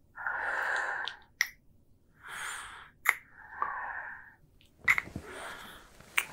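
A man's close-miked breathing and kissing: four breathy exhales, each under a second, with sharp wet lip smacks between them.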